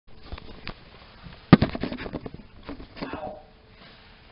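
Handling noise of a small camera being set down on a wooden floor: scattered clicks, then a loud knock about a second and a half in followed by a quick run of rattling clicks and rubbing.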